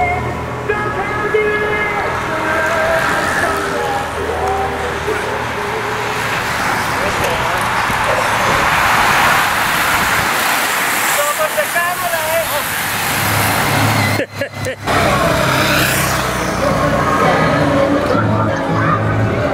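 A peloton of racing bicycles passing close by, a rush of tyres and freewheels that swells and fades, loudest about halfway through. After a brief dropout about three-quarters in, music with a low thudding beat from a roadside loudspeaker takes over.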